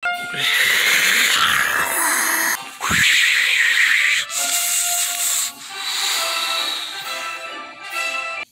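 Loud rushing hiss in two long bursts, the second starting about three seconds in, over background music with steady held notes.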